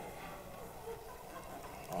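Faint room tone with a steady low hum. A man's voice starts again right at the end.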